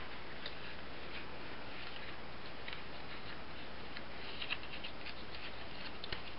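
A few faint crinkles and ticks of folded paper being handled and pressed into an accordion rosette, over a steady background hiss and low hum.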